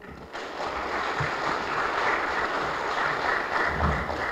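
Audience applauding, a steady clapping that starts just after the speaker stops and holds evenly.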